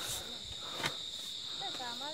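Insects calling in a steady, high-pitched drone, with a single faint knock a little under a second in.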